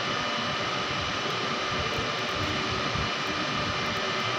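Steady rushing noise of a passenger train running along a station platform, with a few faint steady whine tones over it.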